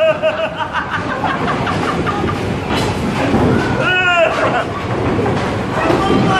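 Men yelling excitedly over the steady noise of a busy bowling alley. One long shout ends about half a second in, and a second loud shout comes about four seconds in.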